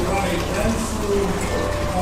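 Voices talking in the background, over a steady low hum.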